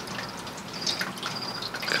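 Hands working inside a large glass jar lined with moss: scattered light clicks and taps of fingers against the glass, with soft rustling of the moss.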